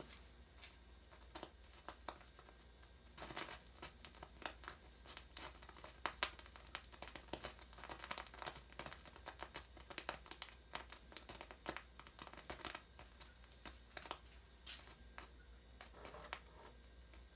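Faint, irregular crackling with scattered sharp clicks from alcohol-soaked tissue paper burning on a watch glass, set alight by manganese heptoxide.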